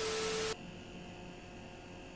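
TV static transition effect: a hiss with a steady tone under it, cutting off suddenly about half a second in, then faint room tone.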